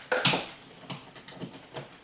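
Handling noise from picking up a hair dryer that is not running: a short rustle near the start, then a few faint clicks and knocks.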